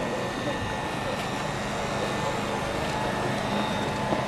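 Steady background noise of an outdoor street crowd, with a faint low hum running through it and no single distinct event.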